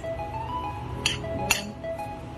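Background music with a melody, over which a fork clinks twice against a glass bowl as shredded green mango salad is tossed, about a second in and again half a second later.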